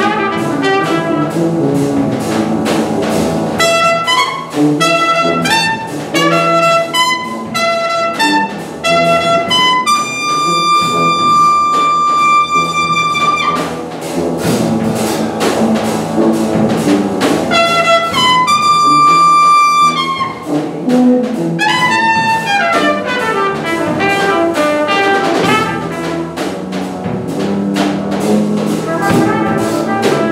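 Live jazz trumpet playing a melodic line over other instruments, holding a long high note about ten seconds in and again near twenty seconds, then falling in a run of slides.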